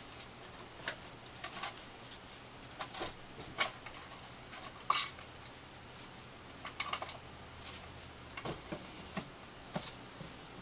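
Irregular clicks and clacks of small hard objects being rummaged through, as someone searches for more clothespins and clips; the sharpest clack comes about halfway through.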